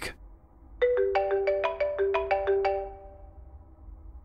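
Mobile phone ringtone: a quick tune of about a dozen short notes, starting about a second in and fading out near the end.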